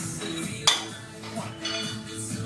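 A sharp metallic clink about two-thirds of a second in: the steel barbell, its end lodged in a rack, knocking metal on metal as it is swung through a rep. Background music plays underneath.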